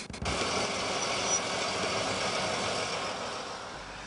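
Diesel shunting locomotive running steadily as it hauls a train slowly past, growing a little fainter near the end.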